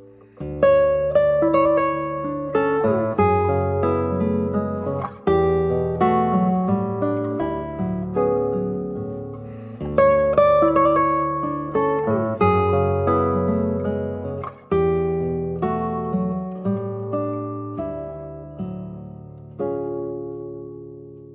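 Nylon-string classical guitar played fingerstyle: a melody of plucked notes over low bass notes that change every couple of seconds, with short breaks between phrases.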